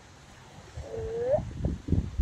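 A single short pitched call, about half a second long, that dips slightly and then rises at its end, followed by low rumbling bursts.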